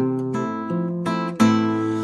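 Acoustic guitar strumming chords in the gap between sung lines of a song, with a new, louder chord about a second and a half in.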